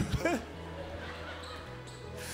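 A couple of soft thumps from a handheld microphone being handled, with a brief voice sound just after, then a low steady hum.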